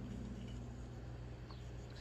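A steady low hum with faint handling of a plastic model-kit sprue: a couple of soft ticks as it is turned in the hand.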